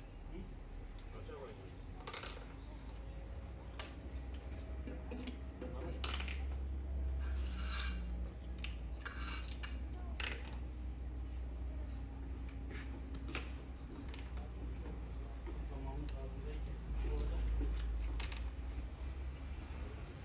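Hand tiling work: a metal trowel scraping and clinking against the adhesive bucket and the tiles, with sharp knocks spread through, over a steady low rumble.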